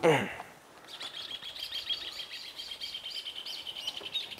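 Birds chirping, a rapid run of high chirps starting about a second in, after a voice trails off at the very start.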